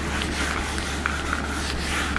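A hand-held eraser rubbing across a whiteboard in repeated wiping strokes, clearing off marker-written figures.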